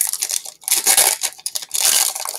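A foil trading-card booster pack wrapper crinkling and tearing as it is ripped open by hand, in a run of short rustling bursts, loudest about a second in and again near the end.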